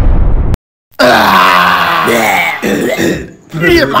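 A loud low rumbling music bed cuts off abruptly, leaving a moment of dead silence. Then a man's voice comes in with long, drawn-out vocal sounds that waver in pitch, followed by shorter rising and falling calls.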